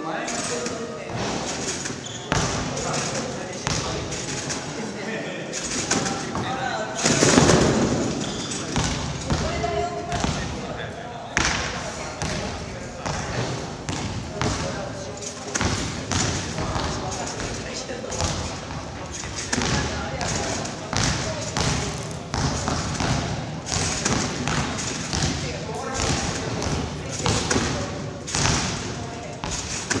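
Competition trampoline bed and springs thumping as a gymnast bounces and somersaults on it, a landing roughly once a second.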